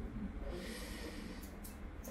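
Faint breathing close to the microphone, over low background noise.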